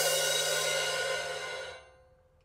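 Crash cymbal ringing out after being struck, its shimmering wash slowly dying away and fading out near the end.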